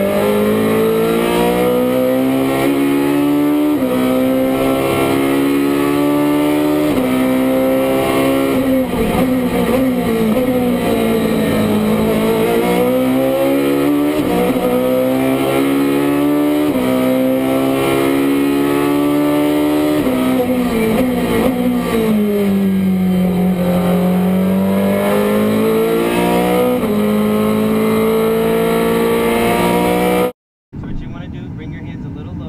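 Ferrari race car engine heard from inside the cockpit at full throttle. The revs climb and drop sharply at each upshift, several times. Twice the revs sink and climb back as the car slows for a corner and accelerates out.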